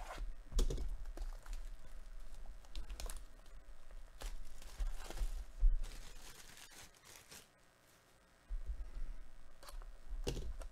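Plastic wrap being torn and crinkled off a cardboard trading-card hobby box, with clicks and scrapes as the box is handled. The crackling comes in irregular spurts, with a short lull about three-quarters of the way through.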